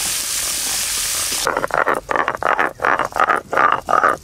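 Sliced onions sizzling in hot oil in an aluminium wok. About a second and a half in, the sizzle cuts off suddenly and a run of rhythmic pulses follows, about three a second.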